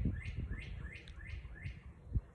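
A songbird singing a run of quick down-slurred chirps, about four a second.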